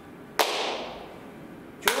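Two sharp hand claps about a second and a half apart, each ringing briefly in the hall, beating out the rhythm of a chatkhan playing pattern.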